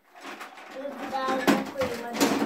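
Plastic toys rattling and clacking as a child rummages through an open dresser drawer full of toys, with a sharper clack about one and a half seconds in.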